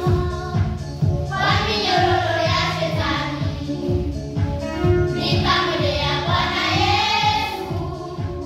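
A group of children singing a Swahili gospel song together in sung phrases, over backing music with a steady low beat.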